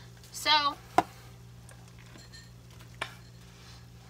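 Oil bubbling faintly around an onion ring deep-frying in a pot, over a low steady hum. A utensil gives two sharp taps on the pot, about a second in and again about three seconds in.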